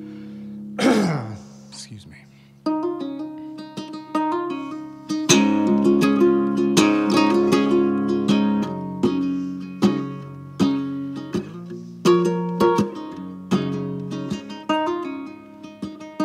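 Acoustic ukulele in a C#–G#–C#–D# tuning: a falling slide in pitch about a second in, a few single plucked notes, then strummed chords from about five seconds in, the introduction to a song.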